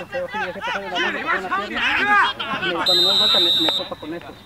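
Players' voices shouting across the pitch, then about three seconds in a referee's whistle blows one steady, shrill blast lasting just under a second, the signal that the free kick may be taken.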